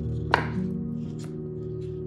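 A knife chopping on a cutting board over background music with held notes: one sharp chop about a third of a second in, then lighter, scattered taps.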